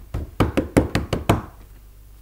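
A quick run of about eight knocks on a wooden workbench, bunched in the first second and a half, then stopping.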